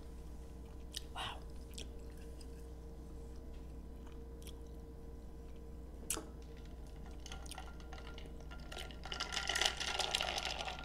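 Close-up chewing of a mouthful of creamy fettuccine alfredo with seafood, mouth closed, with a few soft clicks. Near the end comes a louder burst of rattling and knocking as a metal tumbler is picked up.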